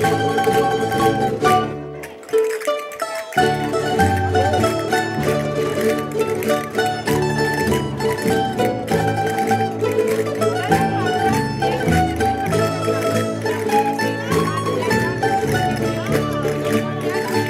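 Rondalla, a Valencian plucked-string folk band, playing a traditional dance tune, with castanets clicking along. About two seconds in the low accompaniment drops out for a second or so, leaving a thin melody line, then the full band comes back in.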